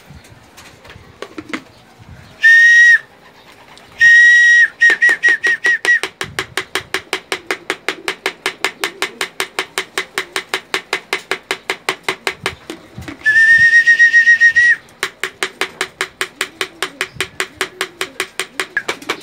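Whistle calls to racing pigeons: a steady high note sounded twice, then a quick run of about seven short pips, and after a pause one long held note. A fast, even ticking of about six clicks a second runs underneath.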